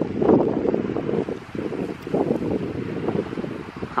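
Wind buffeting the microphone: a low, gusty rumble that rises and falls unevenly.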